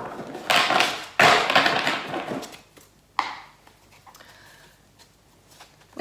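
A deck of oracle cards being shuffled: two bursts of rapid papery clicking, each about a second long, then one short snap of the cards a little after three seconds, followed by quiet handling.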